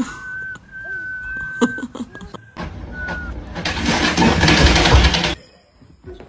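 A long, steady, high whistle lasting nearly two seconds, then two short whistles at the same pitch. About two and a half seconds in, a loud rushing noise starts and runs for nearly three seconds before cutting off suddenly.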